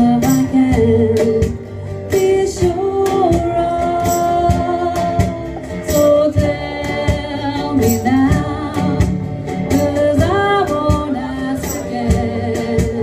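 Live small-band music: a woman singing a slow melody over upright double bass and accompaniment, with a steady percussive beat.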